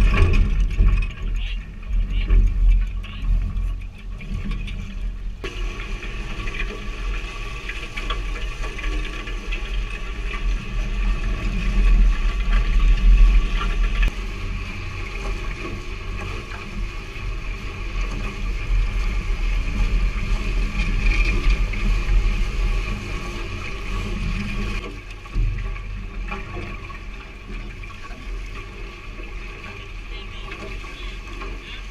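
Wind buffeting a GoPro microphone on a sailing catamaran, with water rushing past the hulls; the low rumble rises and falls in gusts.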